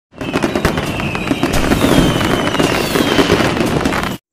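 Fireworks going off: a loud, dense run of sharp crackles, with whistles that slowly fall in pitch.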